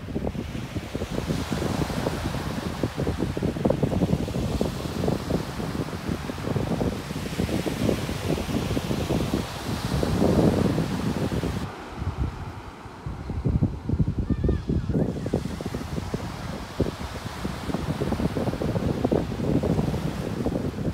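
Sea wind gusting against the microphone over small waves washing onto a beach. The high hiss drops away for a few seconds in the middle.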